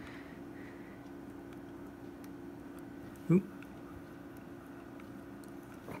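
Quiet room tone with a steady low hum, broken once about three seconds in by a single short vocal sound.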